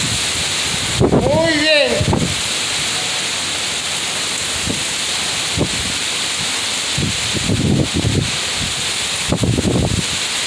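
Hurricane Fiona's wind and driving rain as a steady rushing noise. Gusts buffet the microphone in low rumbles, several times from about seven seconds in and again near the end.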